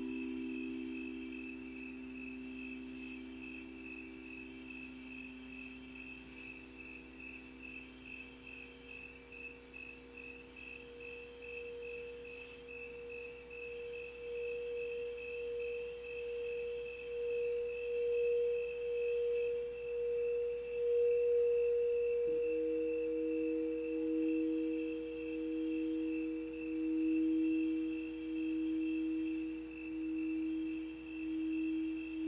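Singing bowls sounding in long, steady tones. Low bowl tones fade out early on while a higher bowl swells with a slow wavering pulse. About two-thirds of the way in, another, lower bowl starts and pulses alongside it, and the sound grows louder toward the end.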